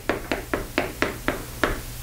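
Chalk striking a chalkboard in a quick, even run of short taps, about four a second.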